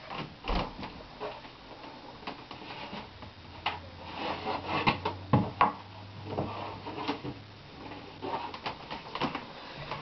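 Plastic snake tubs being handled in a homemade rack: scattered knocks, clicks and sliding scrapes, like a drawer being opened and shut.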